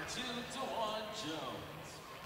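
Faint voices echoing in a gymnasium, with a low arena murmur that fades toward the end.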